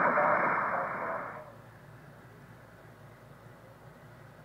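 HF radio receive audio from a loudspeaker: band static with a weak voice buried under it, filtered through the Heil Parametric RX Audio System equalizer. About a second and a half in, the audio fades to a faint hiss as the equalizer is turned completely down.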